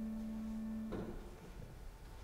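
Keyboard accompaniment holding a steady chord at the close of a hymn verse, cutting off about a second in with a soft knock, then faint room tone.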